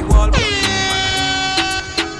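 A DJ air-horn sound effect over a dancehall mix: starting about half a second in, a long horn blast slides down in pitch and then holds, while the beat's bass drops out beneath it.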